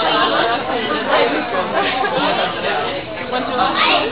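Indistinct chatter of several voices talking over one another in a room.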